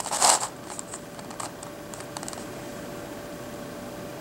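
Plastic pieces of a Crazy Radiolarian twisty puzzle clicking and rattling as its faces are turned by hand. A louder rattle comes at the very start and scattered light clicks follow over the next two seconds, after which only a faint steady hum remains.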